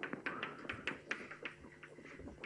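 Chalk writing on a blackboard: a quick, uneven series of about ten sharp taps and clicks.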